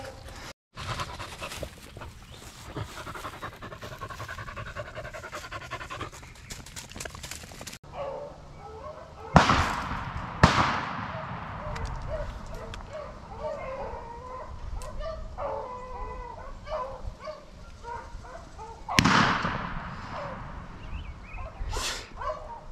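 A pack of rabbit dogs barking and yipping as they run a rabbit, with a few sudden loud noises close by, about nine, ten and nineteen seconds in.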